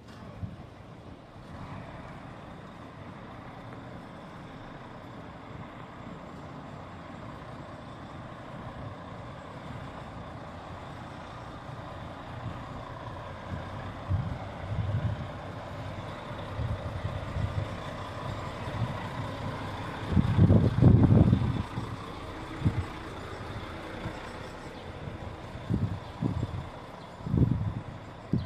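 City street traffic with a tour coach's diesel engine running close by. In the second half, low gusts of wind buffet the microphone several times, loudest about two-thirds of the way through.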